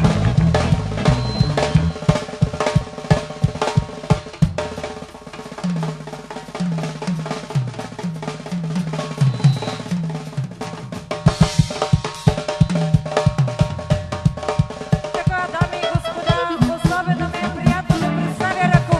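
Live drum kit playing a fast, busy rhythm with many snare and bass-drum hits over a stepping bass line. A melody comes back in over the beat near the end.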